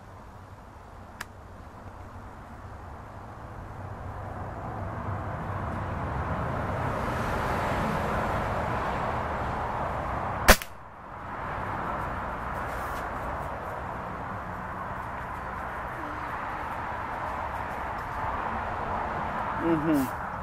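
A single shot from a Hatsan 125 Sniper Vortex gas-piston break-barrel air rifle, a sharp crack about halfway through, over a steady background hiss that swells in the seconds before it.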